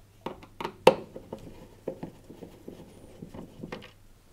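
Screwdriver turning out a screw from a tumble dryer's metal control panel: a run of about ten sharp, irregular clicks and small scrapes.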